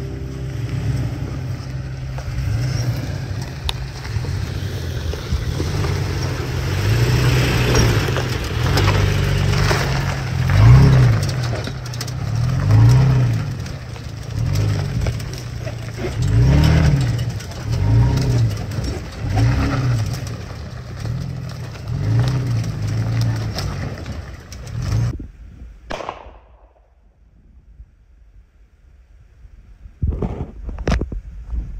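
Pickup truck engine pulling slowly over a rutted dirt trail, its revs swelling and easing about every two seconds as it works over the bumps. The sound cuts off abruptly near the end.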